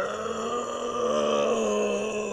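A person's voice holding one long, steady groan, in the manner of a Minecraft zombie.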